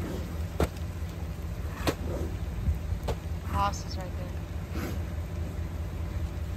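A vehicle engine idling in the background: a steady low rumble. It is broken by a few sharp rustles from a paper feed sack being shaken, and a short call a little past halfway.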